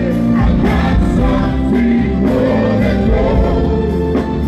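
Live gospel worship song: several singers singing together on microphones over keyboards and a band with a steady beat.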